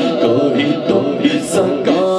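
Unaccompanied male voices singing a naat into microphones, the lead voice drawing out a wavering, ornamented melody.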